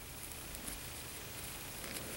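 Faint rustling of acrylic yarn being handled and drawn through a crocheted piece, over a low steady hiss.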